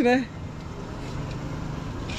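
John Deere 5039 D tractor's diesel engine running steadily, a low, even rumble, with a man's voice cutting off just after the start.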